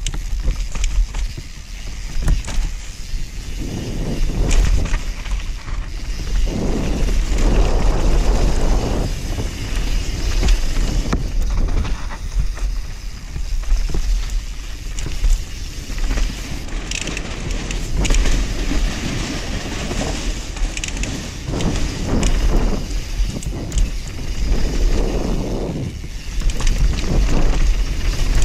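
A YT Capra enduro mountain bike running fast down a dirt and rock trail: tyres rolling over dirt and stones while the chain and frame rattle, clattering harder in several rough stretches. Wind buffets the action camera's microphone throughout with a steady low rumble.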